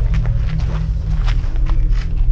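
Footsteps on a packed-dirt yard, several irregular steps, over background music with a heavy steady bass.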